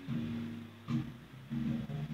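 Band music led by guitar chords in a quick, rhythmic pattern.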